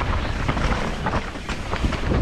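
Mountain bike descending a rough trail at speed: a steady rumble of tyres over the ground with many small knocks and rattles from the bike.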